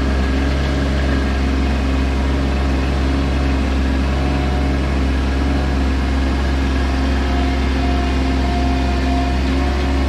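A Bobcat MT100 mini track loader's engine running at a steady speed as the machine drives up onto a trailer, with a constant low drone.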